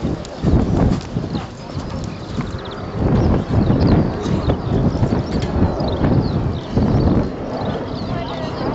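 A horse's hooves cantering on a sand showjumping arena, loudest in surges about half a second in, from about three seconds in, and near seven seconds.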